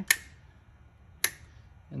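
Two sharp metallic clicks about a second apart from the choke lever of a twin Keihin CV carburetor rack as it is worked by hand, the detent ball snapping the lever into place.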